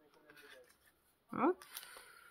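Faint rustling of a clear plastic packet and small paper embellishments being handled.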